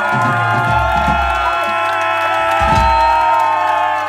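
Live heavy rock band letting distorted electric guitar notes ring out long and sustained, with deep bass notes coming in twice underneath.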